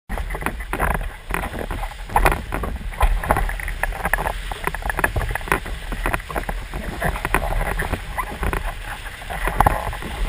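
Wind rumbling on an action camera's microphone on a windsurf rig, with irregular slaps and splashes of water as the board rides through whitewater on a wave.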